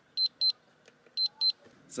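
DigiFlow 8300T digital water flow meter sounding its low-water alarm: two pairs of short high-pitched double beeps about a second apart. It beeps because its 60-gallon countdown has passed zero while water still runs through the meter, a sign that the RV's 65-gallon freshwater tank is getting low.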